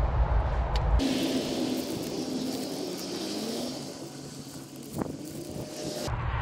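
Wind rumbling on the microphone, cutting off suddenly about a second in. After that a passing motor vehicle's engine is heard, its tone gliding down and then rising again, with one sharp click about five seconds in.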